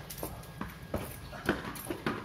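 Several sharp knocks at uneven spacing: a ball bouncing on a stone-tiled courtyard and struck with a wooden cricket bat. The loudest knock comes about one and a half seconds in.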